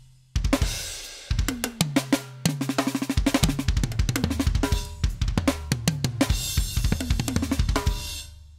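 Alesis Strata Prime electronic drum kit's sampled sounds being played. A cymbal hit rings and fades, then rapid fills run across the drums with bass drum, ending on a hit that rings out near the end.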